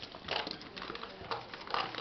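Trading cards being handled on playmats: a scatter of soft taps, clicks and rustles as cards are moved and set down.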